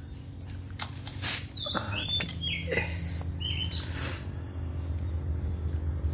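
Small birds chirping: a run of short, bending calls between about one and four seconds in, over a steady low hum, with a few light clicks.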